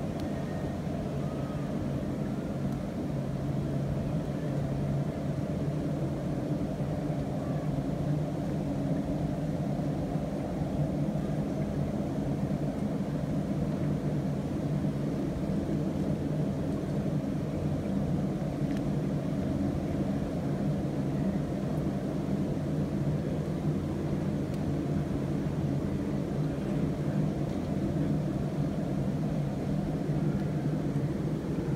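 A steady low mechanical hum that holds an even pitch and level throughout.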